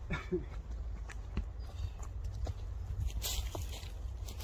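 A few dull thuds of strikes and kicks landing on padded focus mitts, with shuffling footsteps on leaf-covered ground, over a steady low rumble of wind on the microphone.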